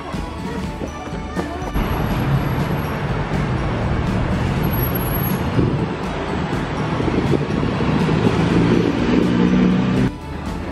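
Road traffic on a town street: a motor vehicle running close by, with steady traffic noise, getting somewhat louder toward the end before cutting off suddenly. Background music plays underneath.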